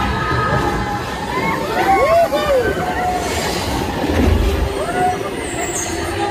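Flying-simulator ride audio: a steady rushing sound with low rumbles, and rising-and-falling cries about two seconds in and again near five seconds.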